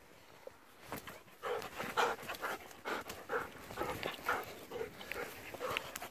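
Golden retriever panting close to the microphone in quick, regular breaths, starting about a second and a half in, with a few sharp clicks among them.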